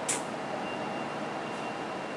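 Steady background hiss of room tone, with a faint thin high tone running through it; a short hissing consonant sounds right at the start.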